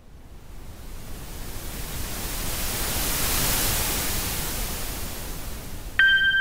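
A swelling rush of hiss-like noise, a logo-intro sound effect, rising out of silence over about three seconds, easing slightly, then cut off at the end.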